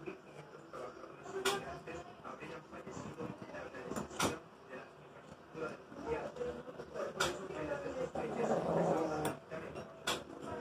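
A dog eating from a plate, with sharp clinks of the plate about four times and a busier stretch of clatter near the end.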